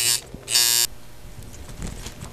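Tattoo machine buzzing in short runs as it works ink into skin. It cuts off just after the start, buzzes again briefly about half a second in, then stops.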